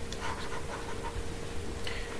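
Quiet breathing sounds over a faint steady hum.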